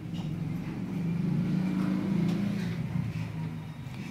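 A motor vehicle's engine running: a low drone that grows louder toward the middle and then fades.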